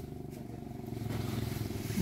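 A motor vehicle's engine running: a low, steady hum that swells slightly in the middle.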